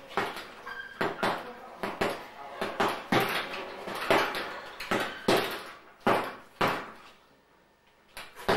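Punches landing on a hanging heavy punch bag, a string of sharp thuds about two a second with a short echo off the room, stopping near the end.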